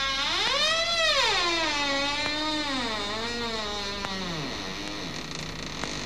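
A single sustained sliding note from a musical instrument: it swoops up in pitch about a second in, then wavers and sinks steadily lower.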